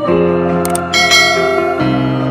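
Background music: held chords with a bright, high accent about a second in and a chord change near the end.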